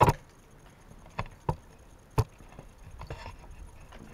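A few sharp knocks: about four short taps spread over the first two seconds or so, the first and the one about two seconds in loudest.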